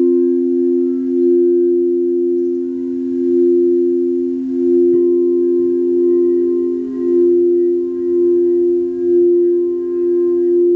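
Crystal singing bowls sounding: two low steady tones held together, their loudness swelling and easing about once a second as they beat against each other. About halfway through a further bowl tone joins with a soft touch of the mallet.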